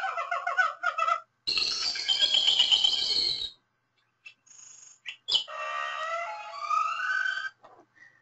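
A run of short recorded animal calls played one after another with brief silences between them: a pitched, harmonic call that ends about a second in, then a louder, rougher call, then a faint high tone and a click, and finally a series of rising whistle-like glides.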